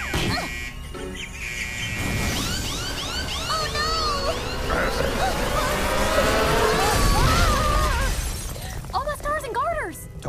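Cartoon sound effects of a duplicating machine overloading: a steady high electronic tone, then from about two seconds in a busy mix of wavering, gliding zaps and whirrs with characters crying out. It builds to a loud low blast around seven seconds, the machine exploding, all under music.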